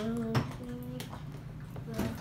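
A voice giving short, flat, hummed 'mm' sounds three times, with a single sharp knock about a third of a second in.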